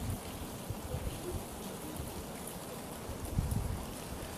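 Faint steady background hiss and low rumble of room tone picked up by the lecturer's microphone, with a few small soft bumps near the end.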